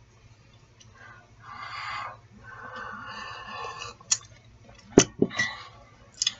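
Sips slurped from a mug: two drawn-out sips of about a second each, followed by two sharp clicks near the end.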